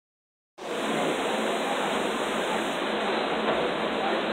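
Steady, even rushing background noise of a bar room, cutting in about half a second in after a brief silence.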